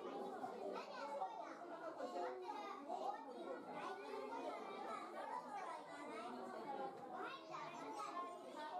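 Continuous overlapping chatter of many people, children's voices among them, with no single voice standing out.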